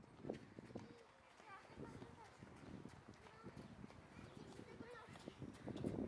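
Faint distant voices over quiet outdoor ambience, with a few faint scattered clicks.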